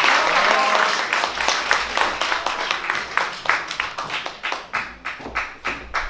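Audience applauding, the dense applause thinning out into fewer, separate claps as it dies down.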